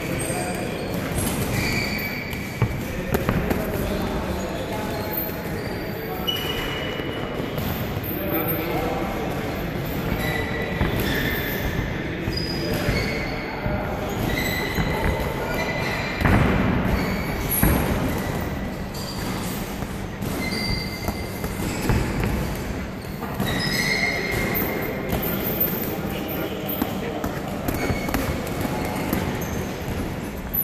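Boxing gloves thudding in repeated short punches during sparring, with shoes scuffing on the ring canvas, over the voices of people in the gym.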